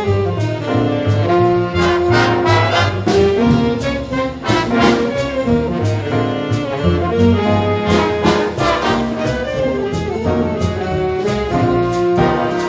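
A student jazz big band playing: trumpets, trombones and saxophones over upright bass, piano and drum kit, with cymbal strokes marking a steady beat.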